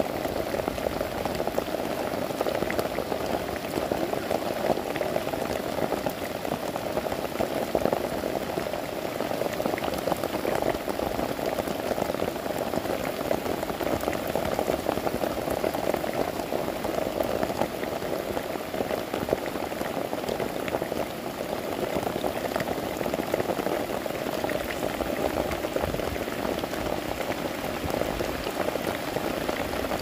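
Steady rain pattering close by, a dense, even crackle with no let-up.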